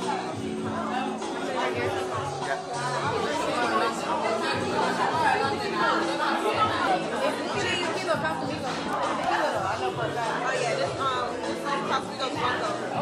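Several people chattering and talking over one another, with music with steady sustained bass notes playing underneath.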